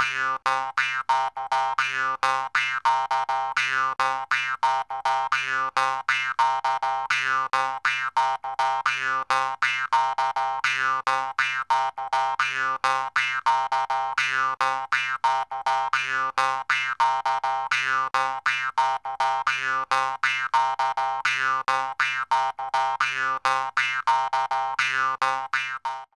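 Instrumental end-theme music: a quick, repetitive run of short notes, about four a second, over a steady low note, fading out at the very end.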